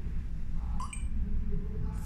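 A short electronic beep from the Geeksmart L-F505 smart lock's touchscreen keypad as it is touched awake, about a second in, over a low steady hum.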